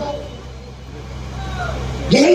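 A pause in amplified speech: a steady low hum, with faint voices in the background about halfway through.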